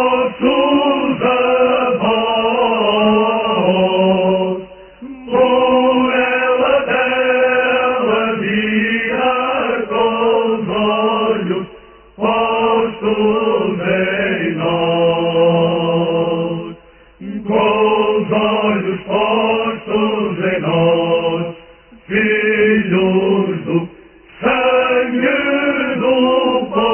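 A group of male voices singing a slow Alentejo folk song (cante alentejano) in long held notes, phrase by phrase, with short breaks between phrases.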